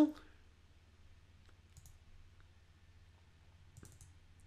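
A few faint computer mouse clicks, the last ones close together near the end, over a low steady hum.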